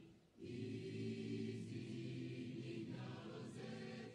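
A choir singing long, held notes, with a brief break just after the start.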